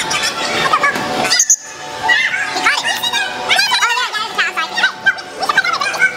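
Kids' voices shouting and calling out over background music, with a short dropout about one and a half seconds in.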